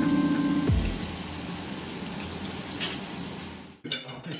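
Pieces of meat sizzling in oil in a frying pan: a steady hiss. Background music ends in the first second, and a clink of dishes comes at the very end.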